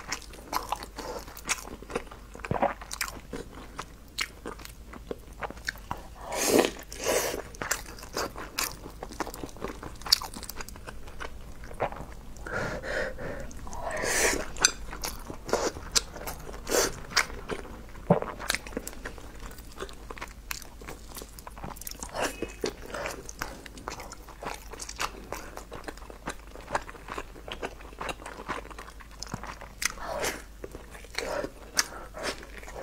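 Close-miked eating sounds: wet chewing, biting and mouth smacking on soft, sticky rice dumplings coated in dark syrup. Many short clicks run throughout, with a few louder wet bursts about six to seven and fourteen seconds in.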